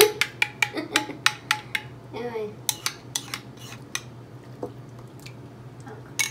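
Metal utensil clicking rapidly against a ceramic bowl while beating an egg-and-cream mixture, several clicks a second, thinning out in the second half.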